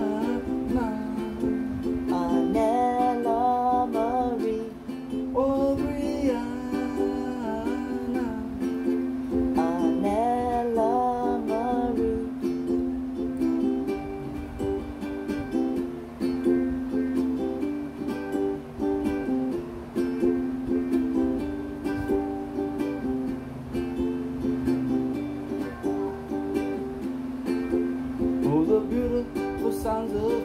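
Ukulele strummed steadily in a rhythmic chord accompaniment, with a man's singing voice over it for roughly the first twelve seconds. After that the ukulele plays alone, and the voice comes back near the end.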